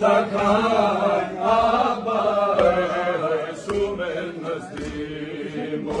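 Men chanting a Balti noha, a Shia mourning lament for Hazrat Abbas, with a lead reciter singing into a microphone in a long, wavering melodic line.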